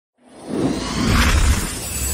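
Logo-animation sound effect: a shimmering, glassy whoosh over a deep low rumble, swelling from silence to a peak about one and a half seconds in, then starting to fade.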